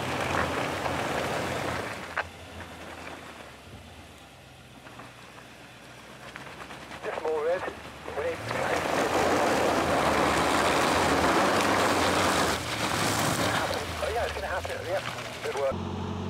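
Nissan Patrol Y62's 5.6-litre V8 working under throttle on a steep, loose dirt climb, with tyre and dirt noise as the wheels spin for grip; the noise grows louder for about four seconds past the middle, then eases.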